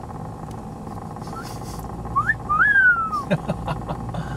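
A rooster crows once about two seconds in: a short rising note, then a longer note that rises and falls slowly. A car engine idles steadily underneath, and a few sharp clicks follow near the end.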